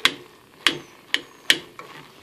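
Spoon knocking against the side of a metal saucepan while stirring rice and pineapple, four sharp clicks about half a second apart.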